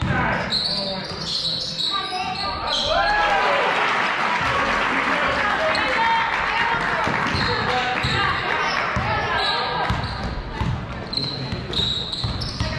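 Basketball game sounds in a gym hall: a ball dribbling on the hardwood floor while spectators shout and cheer, the crowd noise swelling from about three seconds in until about nine seconds.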